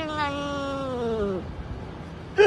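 A cat's long, drawn-out yowl, sliding slowly down in pitch and ending about one and a half seconds in.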